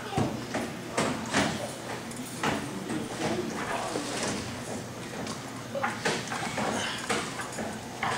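Irregular knocks and thuds on an arm-wrestling table, from elbows, hands and arms hitting the pads and tabletop, with low voices underneath.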